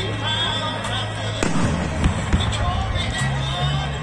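Aerial fireworks going off, with one sharp bang about a second and a half in and a few fainter pops.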